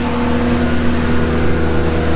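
Ground support cart's engine running steadily: a constant hum with a steady mid-pitched tone and no change in speed.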